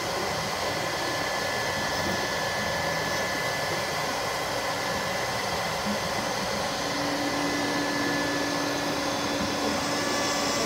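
ShopBot Desktop CNC router running a carving pass in a painted wooden board, with a steady whine from the spindle and the rushing of the dust-collection vacuum drawing through its hose. A lower hum joins about two-thirds of the way through.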